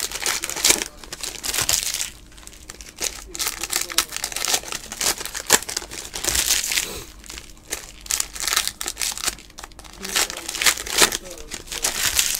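Foil trading-card pack wrappers crinkling and tearing as packs are torn open by hand, in irregular bursts with short lulls between.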